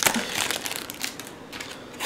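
Thin clear plastic protective film crinkling as it is handled and pulled off a drive's glossy casing, a dense run of crackles in the first second that thins out after.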